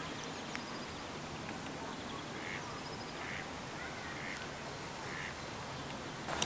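Ducks quacking: four short quacks about a second apart in the second half, over a steady hiss of outdoor background noise.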